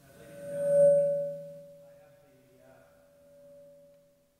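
Public-address feedback: a ringing tone swells to a loud peak about a second in, then slowly fades away.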